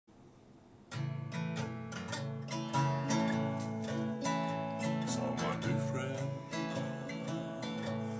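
Acoustic guitar strummed in a steady rhythm as the introduction to a country song, starting about a second in.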